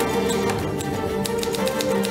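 Background music with typewriter key clicks over it, several irregular clacks, a typing sound effect for text being typed out on screen.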